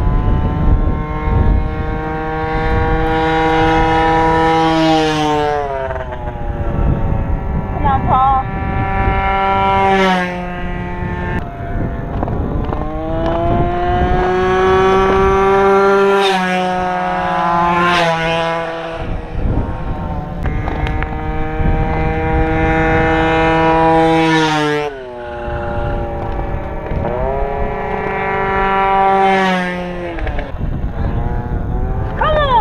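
Racing mopeds passing the finish line one after another, about six in all, each engine note holding steady and then dropping in pitch as it goes by.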